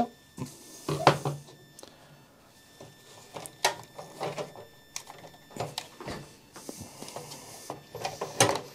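Scattered clicks, knocks and rubbing of a graphics card being worked out of its slot in a PC case by gloved hands.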